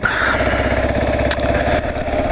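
A 2009 Kawasaki KLR 650's single-cylinder engine running steadily while the motorcycle cruises along, heard through a helmet-mounted GoPro.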